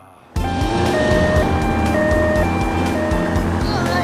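Upbeat children's song starting with a steady beat, under a two-tone hi-lo ambulance siren that switches pitch about every half second. It comes in suddenly after a brief gap.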